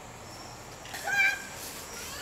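A cat meowing once, a short call that rises and then falls in pitch, about a second in.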